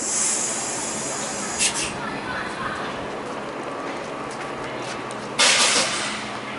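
Compressed air hissing from a train at a station: a hiss at the start, a short one about one and a half seconds in, and a louder, longer burst near the end.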